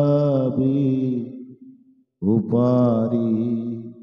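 A man singing a Bengali Islamic gojol unaccompanied, holding long, wavering notes. One phrase fades out about halfway through, and after a short pause he starts the next.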